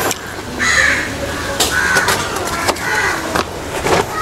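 Birds calling outdoors: a harsh cawing call repeated about three times, with a few short clicks in between.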